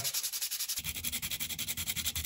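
Fine sandpaper rubbed by hand over hard plastic interior trim in quick back-and-forth strokes, several a second, scuffing the surface to key it for paint.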